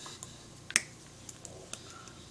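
Hands striking against each other while signing in ASL: a few sharp clicks and slaps, the loudest about three quarters of a second in.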